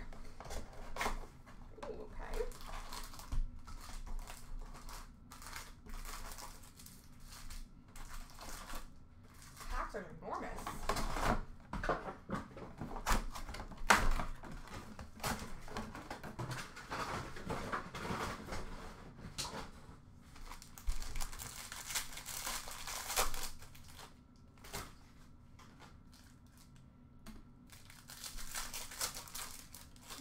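A sealed trading-card hobby box being opened and unpacked by hand: plastic wrap and foil pack wrappers crinkling and tearing, cardboard rustling, with irregular light clicks and taps as packs are handled. The crinkling comes in bursts, with a quieter stretch shortly before the end.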